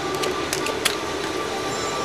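A few sharp clicks of seatbelt buckles being unlatched over a steady mechanical hum.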